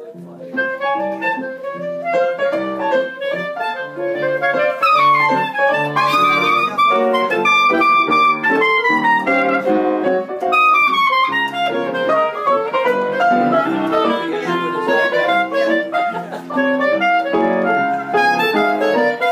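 Two clarinets improvising together, their lines weaving over each other in quick runs of notes.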